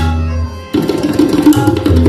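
Two tabla sets played together in teentaal over a harmonium's steady repeating lahara melody. The drumming thins for a moment about two-thirds of a second in, then a fast, dense run of strokes comes back in.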